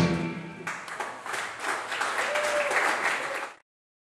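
The last sung note and guitar of a song die away, then a small audience claps for a few seconds; the sound cuts off abruptly about three and a half seconds in.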